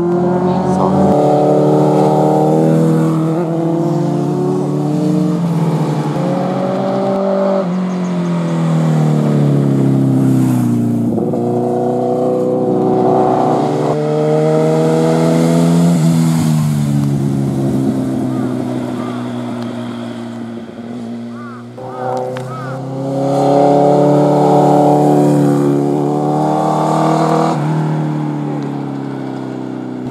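Sport motorcycle engine revving through a series of bends, its pitch repeatedly climbing under acceleration and dropping as the throttle rolls off. A brief "wow" is spoken about two-thirds of the way in.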